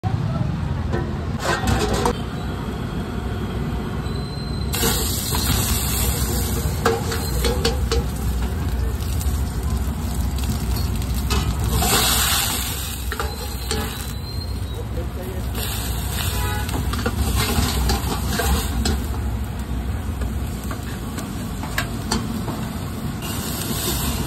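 Stir-frying in an iron wok over a gas burner: the burner's steady rushing noise with a metal ladle clinking and scraping in the pan, and a louder surge of flame flaring up in the wok about halfway through.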